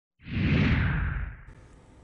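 Broadcast-graphic whoosh sound effect with a deep rumble under it, swelling in just after the start and fading out about a second and a half in, the stinger of an animated news title sequence.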